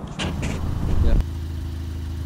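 A loud low rumble with a short spoken word, cut off suddenly about a second in by a car engine idling steadily.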